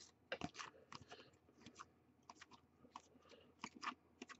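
Faint, irregular clicks and rustles of a stack of baseball trading cards being flipped through one by one by hand.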